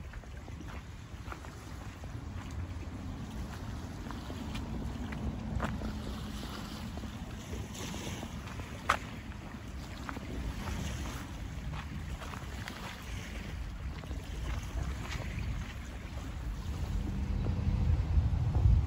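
Outdoor ambience of a steady low rumble, mostly wind on the microphone, with faint scattered ticks and one sharp click about halfway. Near the end the rumble grows louder as road traffic comes near.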